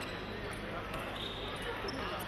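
Sports hall ambience of background voices with a few light thuds and taps, such as footsteps on a fencing piste.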